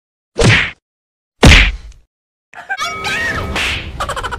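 Two comedy whack sound effects about a second apart, the second louder and heavier with more low thump. From about two and a half seconds in comes a busier stretch of noise with short warbling tones.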